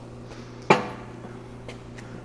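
A single sharp metallic clank about two-thirds of a second in, dying away quickly, over a low steady hum.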